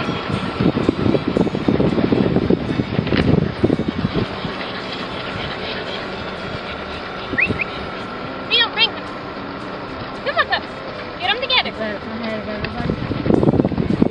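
Wind buffeting the microphone with rumbling handling noise, heaviest in the first few seconds and again near the end. In between, a few short high chirping calls sound.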